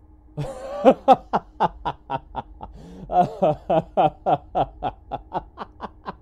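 A person laughing in a long run of short pulses, about four a second, loudest in the first second and then trailing off.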